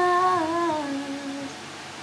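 A woman's voice holding the final long note of a song, stepping down in pitch and fading out about a second and a half in, leaving a steady background hiss.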